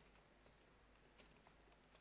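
Faint computer-keyboard typing: a few scattered, quiet keystroke clicks against near silence.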